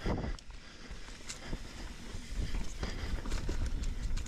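Mountain bike riding down a dirt singletrack: low wind and tyre rumble on a chin-mounted camera's microphone, growing louder about halfway through as the bike picks up speed, with many short ticks and rattles from the bike over the rough trail.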